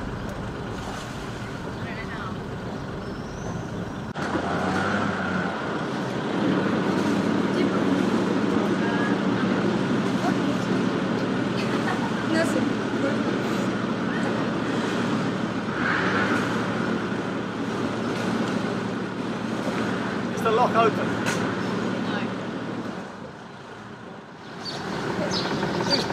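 A boat's engine running with a steady low hum while the boat motors, with brief snatches of voices over it. The sound drops away for a moment near the end.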